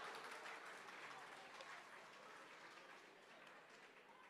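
Faint audience applause fading away.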